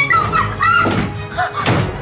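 Dramatic background music with two dull thuds, about a second in and near the end, from a struggle between two people.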